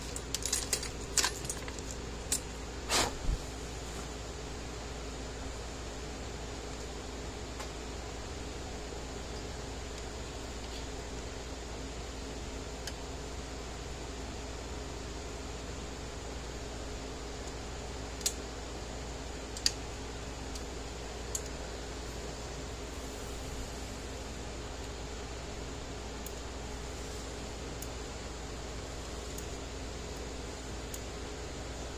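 Steady low workshop hum, with a quick cluster of small sharp metallic clicks and taps in the first few seconds and a few isolated clicks later, from small metal parts and clips being handled on a workbench.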